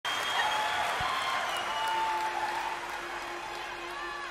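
Large arena audience applauding, the applause fading gradually.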